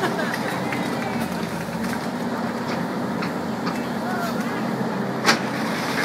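Caterpillar 320B hydraulic excavator's diesel engine running steadily as its bucket tears into a stucco building wall, with scattered cracking of the breaking wall and one sharp, loud crack about five seconds in.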